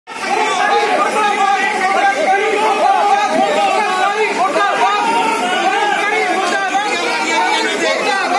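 Crowd of many voices talking and calling out over one another in a loud, unbroken clamour.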